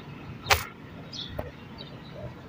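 A single sharp crack about half a second in, with a much fainter click near the middle, over quiet outdoor background with a few faint high chirps.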